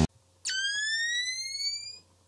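Music cuts off, and about half a second later a single high electronic tone starts, gliding slowly upward in pitch for about a second and a half before fading out: a sound effect for an animated logo reveal.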